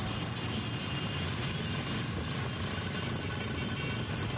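Engines of many motorcycles running together as a large group rides slowly, heard from among the pack as a steady, continuous rumble.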